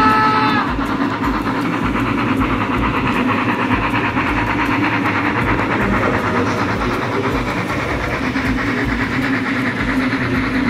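Model BR 86 steam locomotive's whistle sounding and cutting off about half a second in, followed by the steady rolling and rapid clicking of the locomotive and its long train of Talbot hopper wagons running over model track.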